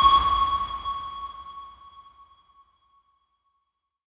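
A single electronic chime-like ping sounds once and rings out, fading away over about two and a half seconds, with a low rumble beneath it at first.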